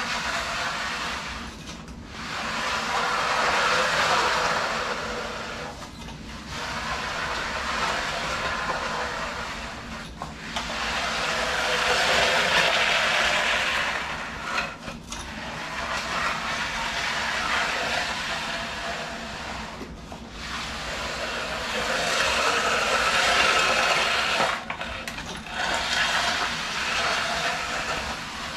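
Long-handled aluminium bull float sliding over freshly placed wet concrete, smoothing the new floor: a long scraping swish with each push or pull, about six strokes of four to five seconds with short breaks between them.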